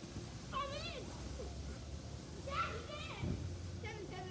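Children shouting during play, two high-pitched wavering yells with no clear words: one about a second in, another near the three-second mark.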